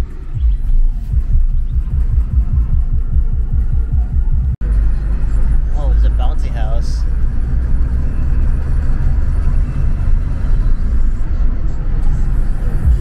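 Low rumble of a car cabin on the move, with music playing over it; the rumble pulses in quick low thumps at first, then after a brief drop-out about four and a half seconds in it runs steadier.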